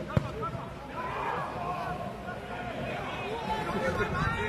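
Players' voices calling across a football pitch, with one sharp thud of the ball being kicked just after the start.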